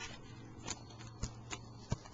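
A pump marker with a homemade sponge nib pressed down onto paper to pump ink through, giving four short sharp clicks spread over two seconds.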